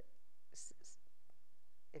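Faint, soft speech from someone away from the microphone, with two short hissing sounds about half a second in; otherwise quiet room tone.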